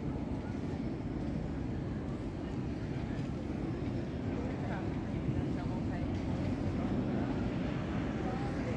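City street ambience: a steady low rumble like distant traffic, with faint, unintelligible voices of passers-by, mostly around the middle.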